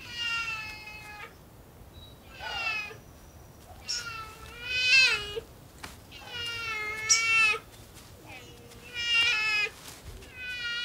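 Black bear cub calling for its mother: about five drawn-out, wavering, meow-like cries, each a second or so long and spaced about two seconds apart. The calls carry no alarm; the cub has lost sight of its mother and is trying to find her again.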